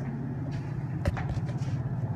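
Mitsubishi hydraulic elevator running, a steady low hum heard from inside the cab, with one sharp click about a second in.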